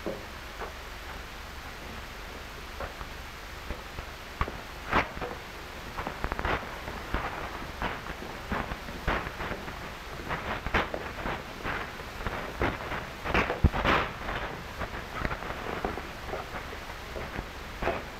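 Steady hiss of an old film soundtrack with scattered light clicks and knocks, more of them in the second half.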